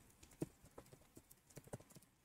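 Faint computer keyboard typing: a run of short, irregularly spaced keystroke clicks.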